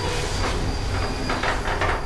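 Lift doors sliding shut with a rumbling run and a few clatters in the second half, over a steady low hum.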